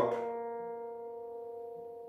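Steel-string acoustic guitar, capoed at the second fret, with plucked chord notes ringing on and slowly fading. No new note is struck.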